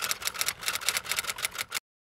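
Typewriter typing sound effect: a quick, irregular run of keystroke clicks, cutting off abruptly near the end.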